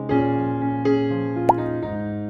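Background electric piano music with sustained chords. About one and a half seconds in comes a single short pop that glides quickly up in pitch, louder than the music.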